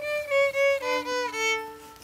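A violin bowed in a short, slow phrase of held notes stepping downward in pitch, the later notes sounded together with a lower string as a double stop, fading away near the end.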